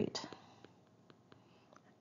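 Faint, irregular ticks and taps of a stylus writing on a tablet screen.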